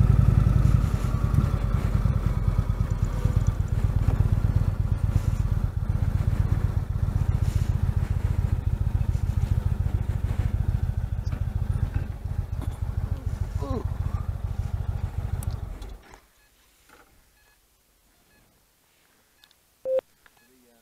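Touring motorcycle engine running at low speed with an even pulsing rumble, then switched off, cutting out suddenly about sixteen seconds in.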